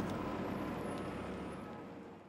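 Steady mechanical noise of a crawler excavator working, fading out toward the end.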